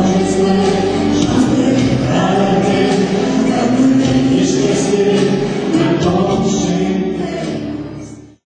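A man and a woman singing a song into microphones with music behind them; the song fades out near the end.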